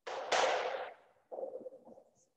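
Whiteboard marker scratching across a whiteboard in two strokes: a louder one about half a second long near the start, and a shorter, softer one about a second and a half in.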